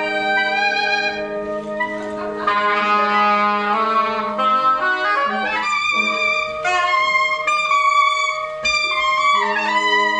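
Wind quintet of flute, oboe d'amore, clarinet, bassoon and horn playing contemporary chamber music: several held notes sound together over a low sustained tone. In the middle, some of the lines slide in pitch before settling into new held notes.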